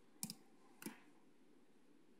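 Near silence, broken by a few faint, short clicks in the first second.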